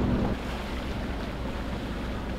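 Sailing catamaran motoring under engine power: a steady low engine drone with water rushing past the hulls and wind on the microphone. A higher hum drops out about a third of a second in.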